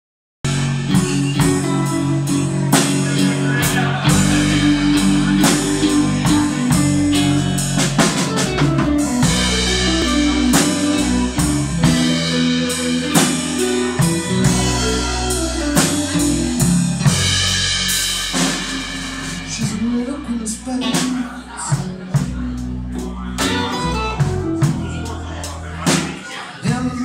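Live blues band playing an instrumental intro: electric guitars, electric bass and drum kit. The music starts abruptly about half a second in, with no singing yet.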